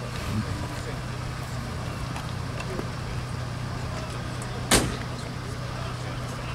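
A car engine idling steadily, with a single sharp thump about three-quarters of the way through.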